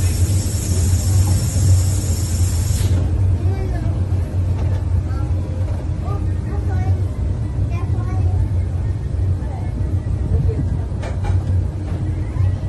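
Electric rack railway railcar running along the rack track, a steady low drone of its drive and wheels heard through an open window. A high hiss over it cuts off suddenly about three seconds in, and passengers' voices murmur faintly throughout.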